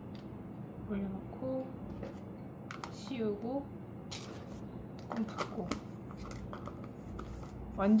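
Short plastic clicks and rustles from a plastic jar of toner pads and its lid being handled, several times. Under them, faint dialogue from a TV drama playing in the background comes and goes.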